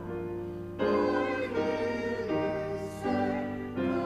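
Voices singing a slow communion hymn in held notes, moving to a new note about every second.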